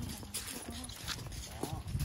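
Faint voices of people close by over a low rumble, with a few light clicks; a short voice is heard near the end.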